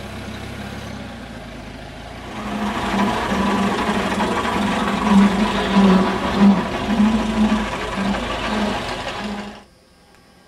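Vintage van engine running as the van drives off. It grows louder about two seconds in, with an uneven pulsing beat, and cuts off suddenly shortly before the end.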